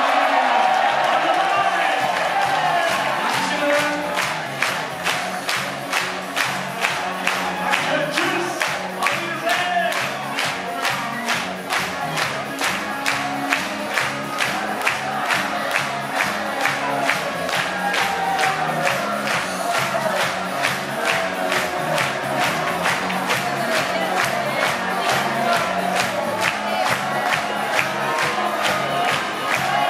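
A German-style party band playing live, with a large crowd clapping in time on the beat.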